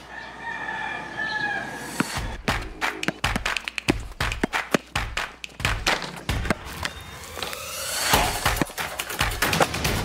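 A rooster crows once, then a run of sharp thumps of a basketball being dribbled, set to music, with a rising whoosh about eight seconds in.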